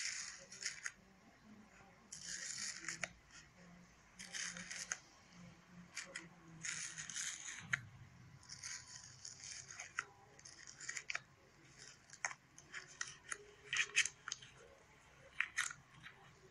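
Airy, bubbly slime being poked and stretched by fingers in a container, crackling and popping as its air bubbles burst, in irregular bursts of about half a second to a second with sharp single pops in between.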